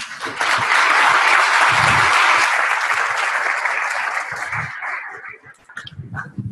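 Audience of a room-sized group applauding, rising quickly at the start, holding steady, then thinning out and dying away in the last second or so.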